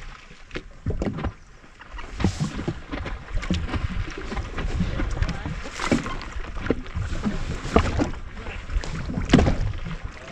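Water lapping against a jet ski hull, with wind buffeting the camera microphone and a few sharp knocks and slaps, the loudest near the end.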